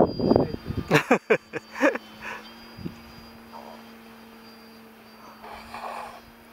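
People talking for the first two seconds, then the faint, steady drone of a small aircraft flying overhead.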